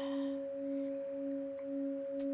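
Metal singing bowl ringing steadily, played by circling a wooden mallet around its rim: a low sustained hum with a higher overtone about an octave up, the low tone pulsing gently about twice a second.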